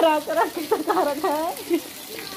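A high-pitched voice talking in short phrases over a steady background hiss. The talking stops near the end.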